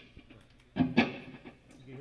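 Electric guitar: two notes picked about three-quarters of a second and one second in, left ringing and fading.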